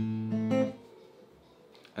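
Acoustic guitar playing an A minor chord from the open fifth string upward: a low attack, a second attack with higher notes about half a second later, and the strings stop ringing before a second has passed.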